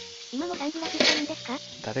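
Tteokbokki cooking in a glass-lidded pan on the stove: a steady sizzling hiss. A voice comes in briefly over it about half a second in and again near the end.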